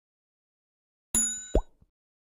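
Subscribe-button animation sound effects: a bright ding about a second in, then a short pop that drops in pitch, and a faint click near the end.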